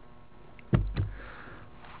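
A person sniffing close to a microphone: two short sharp sniffs about a quarter second apart, then a soft breath, over a low steady room hum.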